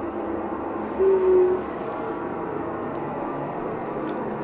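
Steady droning hum of a ventilation fan, with a brief louder pitched tone lasting about half a second, about a second in.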